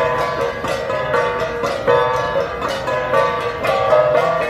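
An ensemble of gangsa, flat bronze Cordillera gongs, struck in a steady repeating rhythm of about two to three ringing strikes a second, the overlapping gong tones sounding together.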